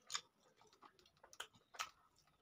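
Close-miked eating of rice pulao by hand: several short, sharp wet clicks and smacks of chewing and fingers in the rice, the loudest just after the start and in the last half second.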